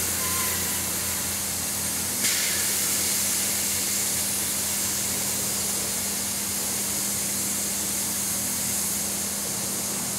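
Overcharged alkaline D-cell batteries venting with a loud, steady hiss, driven at about 72 V AC until they cook, over a steady 50 Hz mains transformer hum. There is a sharp crack about two seconds in.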